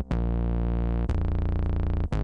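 Low synth bass from the MPC One+ playing two long sustained notes, the second starting about a second in. The bass is run through the AIR Distortion plugin in soft mode, its mix being turned up, which gives it a gritty edge with more bite.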